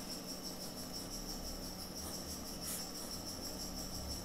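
Faint marker strokes on paper, with a steady, high-pitched, evenly pulsing chirring under them.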